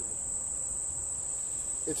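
Insects in the woods trilling in a steady, unbroken high-pitched chorus that does not pulse or change.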